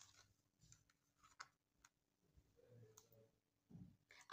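Near silence: a few faint, scattered clicks as hands handle tarot cards laid on a cloth, over a faint steady hum.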